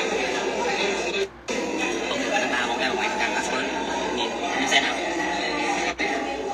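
Voices and music playing together from a social-media video clip, with a short drop-out about a second in.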